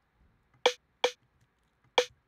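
A drum-and-bass accent snare sample, run through a cabinet effect, played on its own three times: two quick hits about two-thirds of a second in and a third near the end. Each hit is a short, dry crack with a brief pitched ring.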